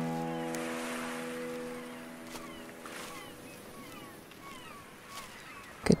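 A sustained piano chord at the end of the intro music rings out and fades away over about three seconds. Beneath it rises a soft, steady outdoor hiss with faint bird chirps, a run of short falling notes.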